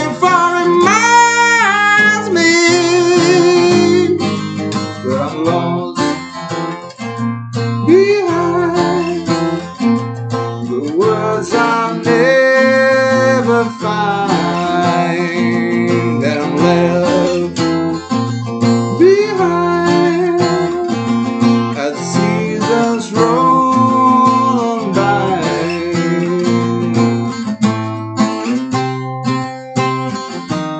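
Acoustic guitar played continuously, with a man singing over it in phrases that include long held notes.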